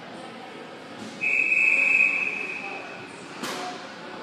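Referee's whistle: one long, steady, shrill blast lasting about a second, signalling a stoppage in play, followed by a sharp clack near the end.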